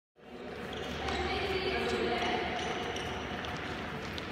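Indoor badminton hall din, fading in at the start: players' voices mixed with a few sharp cracks of rackets hitting shuttlecocks.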